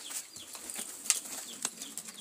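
Pigeons flapping their wings, with scattered sharp clicks and rustling.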